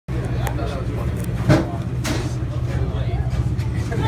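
Fishing boat's engine running with a steady low rumble under background voices, with one sharp thump about a second and a half in.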